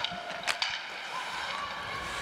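Ice hockey play at rink level: skates scraping the ice, with two sharp stick clacks about half a second apart near the start, over a steady arena hiss.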